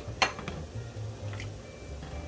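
Metal ladle stirring julienned carrot and zucchini through broth in a wok, with one sharp clink of the ladle against the pan a quarter second in and a fainter clink later.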